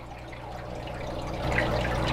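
Aquarium filter running: water trickling and dripping into the tank over a steady low hum, getting louder toward the end.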